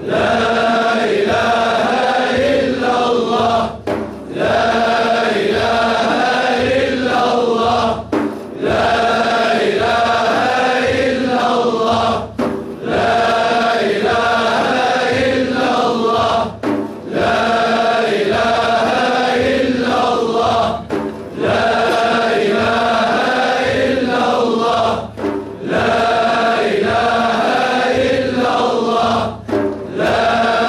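A group of voices chanting dhikr together, one phrase repeated with a short pause for breath about every four seconds, over a steady low pulse.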